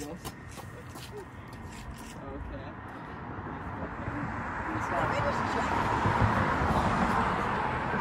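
A passing vehicle: a smooth rushing noise that grows steadily louder over the second half, with faint voices in the background.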